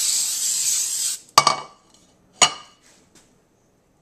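Aerosol nonstick cooking spray hissing into a metal bundt pan, cutting off about a second in. Then two sharp metallic clanks about a second apart as the pan is set down on the counter.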